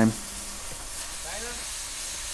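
Oxy-fuel cutting torch hissing steadily as it cuts a piece of steel.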